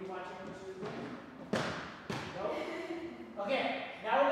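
Voices talking, with a sharp thump about one and a half seconds in and a second, softer one about half a second later.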